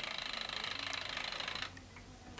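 Wind-up mechanical kitchen timer running, its clockwork giving a fast, even ticking rattle. The ticking stops shortly before the end.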